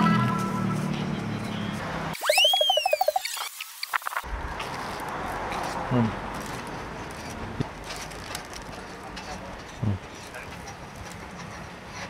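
A cartoon-style comedy sound effect: a whistle that rises and then falls, over a warbling tone, replacing the background for about two seconds. Afterwards there is steady street noise and a short 'mm' hum about six seconds in.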